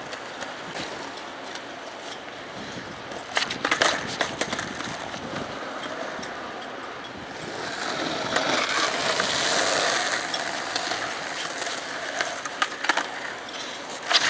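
Skateboard wheels rolling on concrete, with a sharp clatter of the board striking the ground about three and a half seconds in and a few more clacks near the end. The rolling noise grows louder for a few seconds in the middle.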